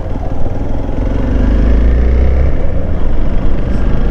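Hero XPulse 200 single-cylinder motorcycle engine running under way and accelerating from a slow roll, getting somewhat louder about a second in.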